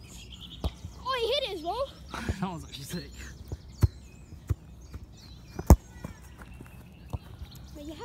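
Shouting voices, too far off to make out words, and several sharp thumps at irregular intervals, the loudest a little after the middle.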